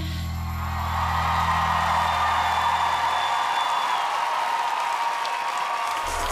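The band's final held chord rings out and fades over the first few seconds, while a studio audience cheers and applauds at the end of the song.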